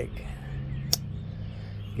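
One sharp metallic snap about a second in, from a slipjoint pocketknife's blade (Jack Wolf Knives Feelgood Jack) being worked against its backspring, the strong snap that knife collectors call a "gator snap". A steady low hum runs underneath.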